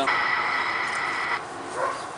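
Bosny aerosol spray paint can spraying onto a wall: a steady hiss lasting about a second and a half, then cutting off.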